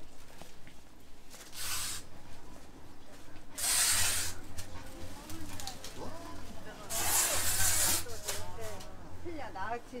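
Indoor market arcade ambience with shoppers' voices in the background, broken by three short hissing bursts. The longest burst lasts about a second, and a voice comes through more clearly near the end.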